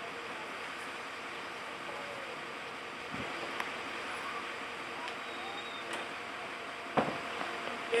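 Steady outdoor background noise with faint distant voices. A single sharp knock comes near the end.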